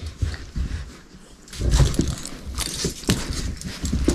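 Irregular rustling, low thumps and light clicks of hands handling dog leashes and clips, with small dogs scuffling about close by.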